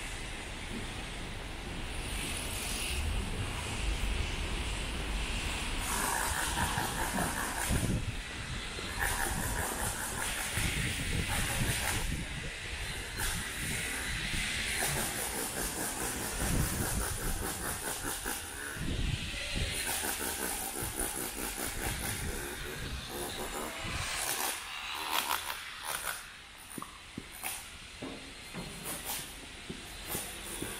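City street ambience: a steady wash of traffic noise from vehicles passing on the road, rising and falling as they go by, easing off somewhat in the last few seconds.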